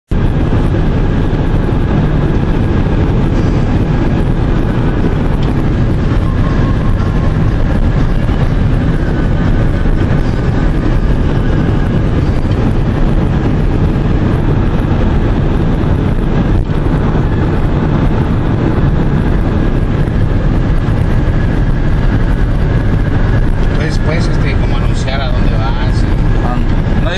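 Steady road and wind noise inside a car at highway speed, a constant low rumble. A voice begins faintly near the end.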